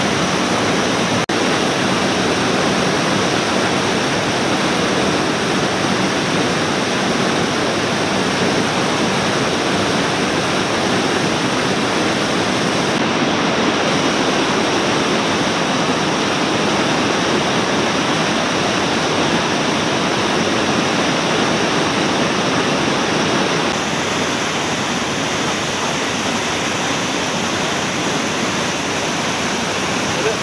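Waterfall in a rock gorge: a loud, steady rush of falling water, a little quieter from about three-quarters of the way through.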